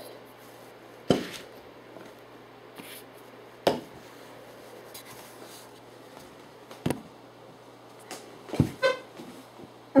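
Camera-handling noise as a handheld camera is set down and repositioned: a few separate knocks and bumps, a cluster of them with a brief squeak near the end, over the steady low hum of a fan running on low.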